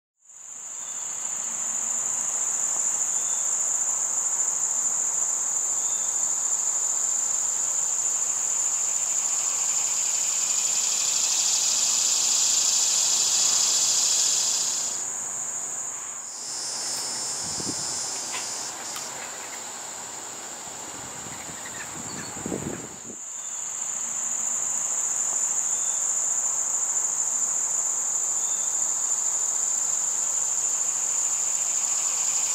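Chorus of insects trilling steadily at a high pitch, cricket-like. A second, lower buzzing joins for a few seconds midway, then the chorus drops away for several seconds with a couple of soft thumps before the high trill returns.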